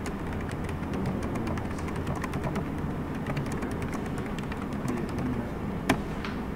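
Meeting-room room tone: scattered light clicks and taps over a steady low hum, with a sharper paper knock just before the end as a sheet is turned over on a document camera.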